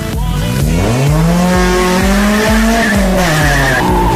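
Honda CRX engine revving up and back down as the car swings round, its tyres squealing on the smooth car-park floor, with the squeal sharpest near the end. Dance music with a steady beat plays underneath.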